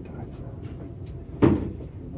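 A single dull thump about one and a half seconds in, over a low background murmur.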